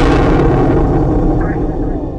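A loud explosion-like crash sound effect for a hard hit: it strikes just before and dies away as a long rumble. Music comes in faintly near the end.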